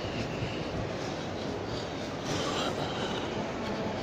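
Steady background noise of an indoor shopping mall: a continuous, even rumbling hiss with no distinct events.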